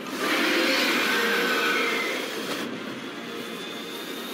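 Animated-series sound effect of a dragon's fire breath: a rushing blast of flame, loudest for the first two seconds, then easing to a steadier lower rush.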